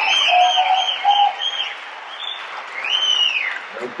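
Audience applauding and whistling for a competitor walking on stage: steady clapping with several short rising-and-falling whistles, then one longer whistle about three seconds in.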